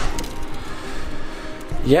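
A handheld camera being moved about: a sharp knock at the start and a few light clicks, over low room noise with a faint tail of music. A man's voice starts just at the end.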